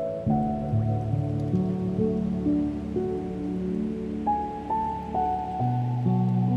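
Slow, gentle solo piano playing a melody over soft sustained chords, notes starting one after another and ringing into each other. Beneath it, a faint steady wash of ocean sound.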